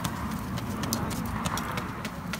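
Wood fire burning in a grill box under carne asada, crackling and popping irregularly over a steady hiss of flame and sizzle.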